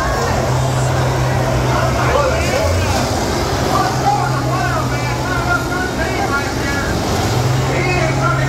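Diesel engines of large combines running hard as they push and ram in a demolition derby, a steady low drone that dips briefly near the end, under the chatter and shouts of a nearby grandstand crowd.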